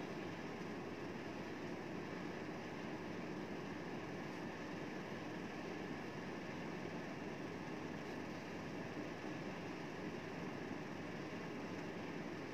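Steady, even hiss of room background noise, unchanging throughout, with no distinct sounds in it.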